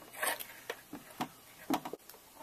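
Patch cable plugs being handled and pushed into the jacks of a Buchla modular synthesizer: a few small clicks and scrapes, roughly half a second apart.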